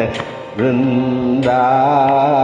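Male voice singing a Carnatic kriti in raga Thodi without words. After a brief dip, he holds a steady note from about half a second in, then moves up to a higher note with a wavering, ornamented pitch shortly before the end.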